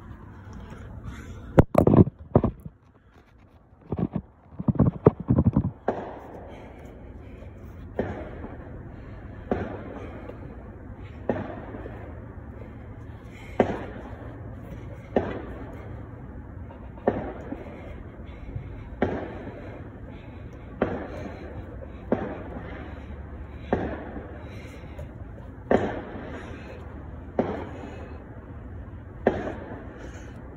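A man doing push-ups, breathing out hard with each rep: a short sharp breath about every two seconds, over a steady low background hum. Near the start there are a few loud knocks and rustles as the phone is handled.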